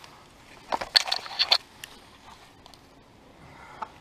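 Weeds being pulled by hand from rain-softened garden soil: a short run of crackling and tearing about a second in, then only faint rustling.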